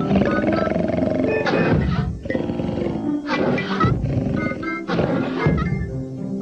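A cartoon dragon's voiced growls: three loud cries that fall in pitch, about a second and a half apart. Light background music with short mallet-like notes runs under them.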